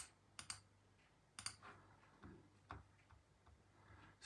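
Several faint clicks on a computer keyboard, some in quick pairs, as the on-screen view is zoomed in.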